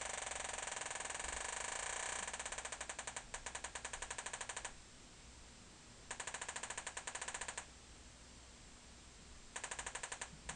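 Homemade metal detector's audio output: a rapid stream of clicks merged into a buzz, which slows to separate clicks about nine a second and stops a little before the five-second mark. Two more short runs of clicks follow, the second starting near the end. The click rate speeds up as the metal tag comes near the search coil and slows as it moves away.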